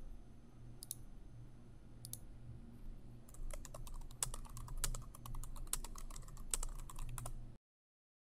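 Computer keyboard typing: a few single clicks at first, then a quick run of keystrokes from about three seconds in. The sound cuts off suddenly shortly before the end.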